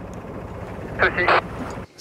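Steady wind and boat noise aboard a sailboat under way, with a brief voice about a second in; the noise cuts off suddenly just before the end.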